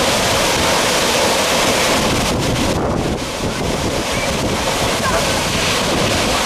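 Steady rush of a large waterfall crashing onto rocks, with wind and spray buffeting the microphone. The high hiss thins briefly about halfway through.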